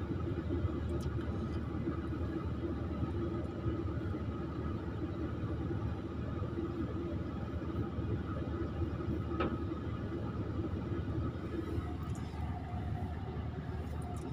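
Hydraulic excavator's diesel engine running steadily, heard from inside the cab while the arm digs, with a single short knock about nine and a half seconds in.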